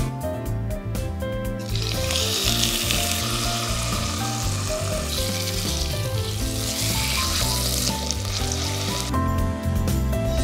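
A pork chop sizzling as it fries in oil in a ceramic-lined electric pot. The sizzle starts about two seconds in and stops about a second before the end, over background music.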